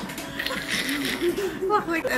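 Women's voices, talking and laughing.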